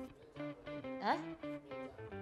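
Background music: a guitar picking a light melody of short notes.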